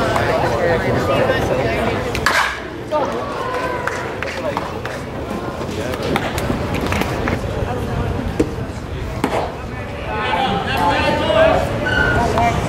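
Indistinct voices of players and spectators at a baseball game, with a few sharp knocks from the ball being thrown and caught.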